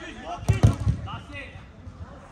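A football being kicked and struck in a quick scramble: three hard thuds in quick succession about half a second in.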